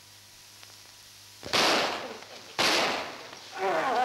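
Two sudden loud blasts about a second apart, each dying away over about a second, with a cloud of smoke bursting up around a man and a dog, on an old film soundtrack.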